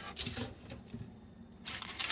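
Faint handling of a parchment-lined metal mesh dehydrator tray on a countertop: light scrapes and paper rustles, with a louder rustle near the end.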